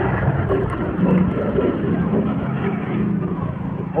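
Steady rumble of motor traffic running along the street.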